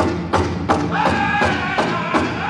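Powwow big drum played by a drum group in a steady beat of about three strikes a second, with the singers' high-pitched voices coming in about halfway through.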